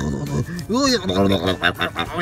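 A man's voice making a playful mock monster roar and growl, one rising-and-falling call followed by a rapid pulsing growl, over background music.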